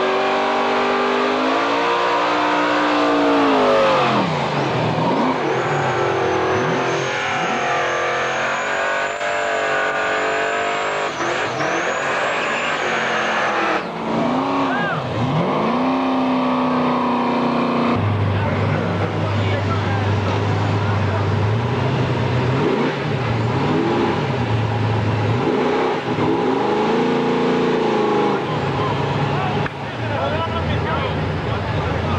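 Street-racing cars revving hard and accelerating away, the engine pitch climbing and falling several times.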